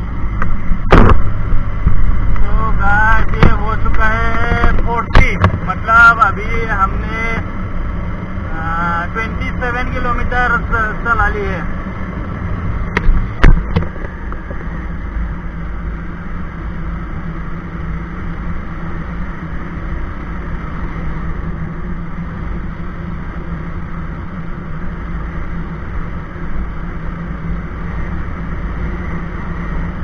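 Bajaj Pulsar 220F's single-cylinder engine running steadily while the motorcycle cruises at about 60 km/h, with wind rushing over the microphone. A voice is heard from about two to eleven seconds in, along with a few sharp knocks.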